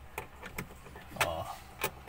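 A screwdriver turning the screw that holds a refrigerator's plastic lamp cover: a few sharp, irregular clicks and small scrapes of metal on plastic, the loudest near the end.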